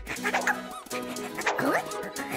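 Short squeaky wordless vocal sounds from a cartoon bunny character, with a few quick rising and falling pitch glides, over light background music.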